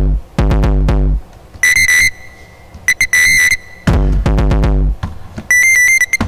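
Electronic music: deep drum-machine bass hits that fall in pitch, alternating with short bursts of rapid, high, alarm-like beeps.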